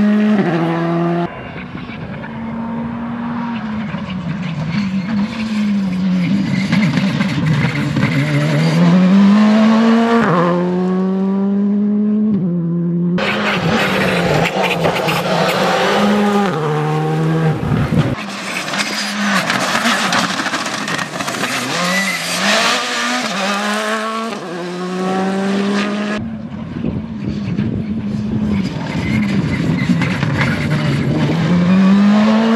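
Škoda Fabia rally car's turbocharged 1.6-litre four-cylinder engine revving hard through the gears, its pitch climbing and dropping sharply at each shift, over several passes separated by cuts. In the loudest middle passes a dense hiss of gravel and dirt spraying from the tyres rides over the engine.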